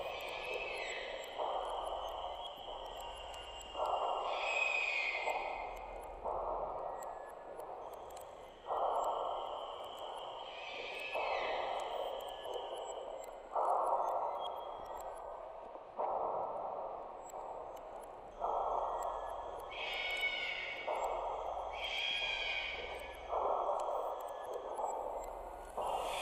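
Quiet atmospheric intro of a deathstep/minatory electronic track. Swells of filtered noise pulse in a slow, even rhythm about every two and a half seconds, under high, falling, whistle-like tones and a thin held tone.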